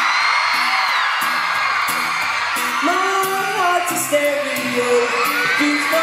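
Live acoustic guitar music with a large audience screaming and singing over it.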